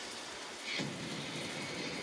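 Steady rushing noise with a low rumble joining about three-quarters of a second in: the background soundtrack of a TV programme in a pause of its narration, played through a projector's speaker and picked up in the room.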